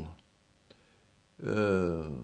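A man's drawn-out hesitation sound, one long 'ehh' falling in pitch, starting about a second and a half in, after a single faint click.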